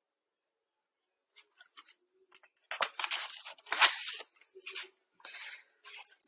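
Picture-book page being turned and handled: paper rustling and brushing in short bursts, starting about a second and a half in and loudest around three to four seconds in.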